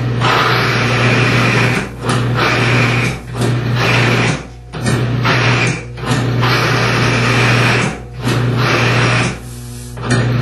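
Cross-axis lubricant test machine running with a steady motor hum while the loaded test bearing grinds harshly in repeated bursts of one to two seconds, with short breaks between. The penetrating lubricant has failed at 100 lbs and the metal surfaces are scoring.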